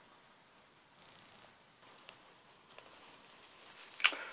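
Near silence: faint room tone with a couple of soft ticks.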